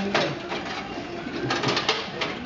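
Steel trowel scraping and scooping cement mortar on a mortar board, with short scrapes right at the start and a quick run of them near the end.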